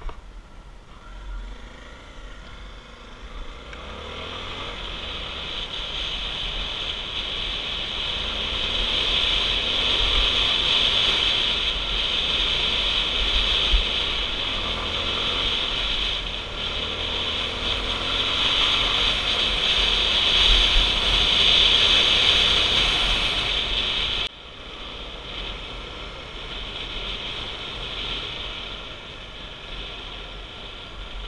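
Motorcycle engine running on a dirt trail, mixed with wind rushing over an onboard microphone. The noise builds steadily for about twenty seconds, then drops suddenly about three-quarters of the way through.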